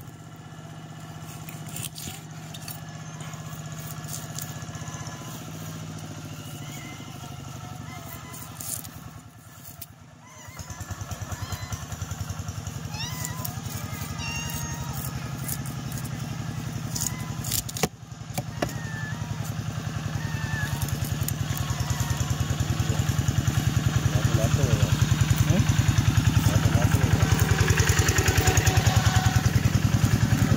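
A motorcycle engine running steadily, louder over the last third. A few sharp knife chops on a wooden cutting board cut through it as a fish is butchered.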